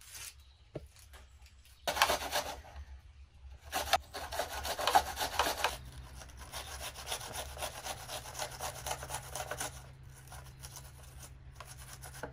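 An onion being grated on a metal box grater: quick rasping strokes, starting about two seconds in and thinning out near the end.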